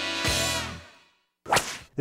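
Intro music ends on a final chord that rings out and fades away within about a second. After a brief silence, a short, loud swish of a transition sound effect comes about one and a half seconds in.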